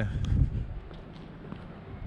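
Faint footsteps of a person walking, over a steady low rumble, with a brief louder sound about half a second in.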